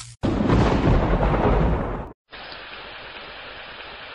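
A thunder rumble lasting about two seconds, followed after a sudden break by a steady hiss of rain: a thunderstorm sound effect laid over the edit, starting and stopping abruptly.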